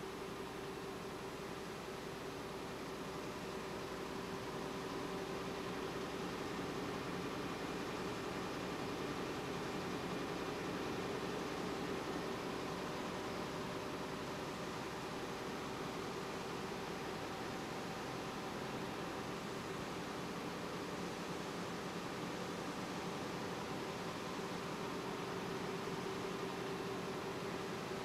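Steady machinery drone of a high-speed web offset press running, an even rushing noise with a faint constant hum that holds level throughout.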